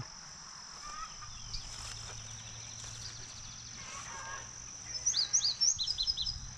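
A steady high-pitched insect drone, with a bird giving a quick run of about five short rising chirps near the end.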